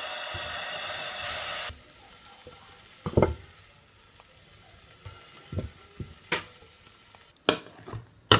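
Diced apples sizzling in a nonstick frying pan while a silicone spatula stirs them. The sizzle cuts off suddenly about two seconds in, and after that come scattered scrapes and sharp taps of the spatula as the apples are scooped out of the pan.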